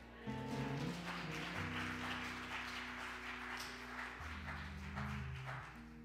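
Instrumental church band music: held low chords that shift to a new pitch every second or so.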